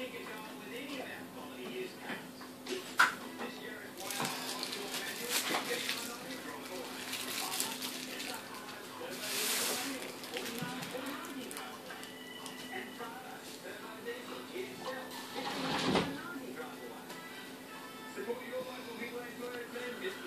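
Indistinct background speech and music under a steady low hum, with a sharp click about three seconds in and a brief hiss about halfway through.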